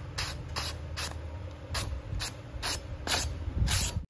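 A kitchen knife with a dimpled blade slicing down through a hand-held sheet of paper. It makes a run of short, crisp rasps, about two or three a second, as the edge cuts cleanly through the paper in a sharpness test.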